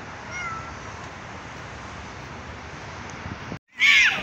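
Cats meowing over a steady outdoor hiss: a faint short falling mew about half a second in, then, after a sudden brief dropout, one loud meow falling in pitch at the very end.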